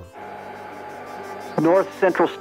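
Steady electrical hum and hiss from the cockpit's headset audio feed, then a voice begins near the end.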